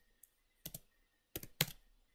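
Computer keyboard keystrokes: a couple of key clicks a little over half a second in, then a quick cluster of clicks around a second and a half in.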